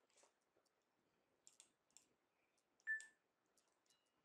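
Near silence with a few faint, scattered clicks; the most distinct is a short click about three seconds in.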